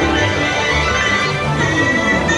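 Dark ride's soundtrack music playing, with held sustained tones over a low pulsing bass.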